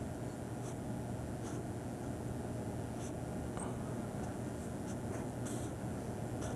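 Pen drawing lines on a paper pad: short, irregular scratchy strokes over a steady low hum.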